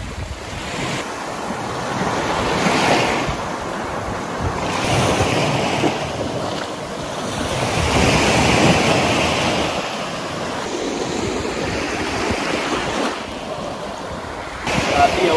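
Small sea waves breaking and washing up a sand beach, the surf swelling and fading in slow surges that peak about three seconds in and again near nine seconds.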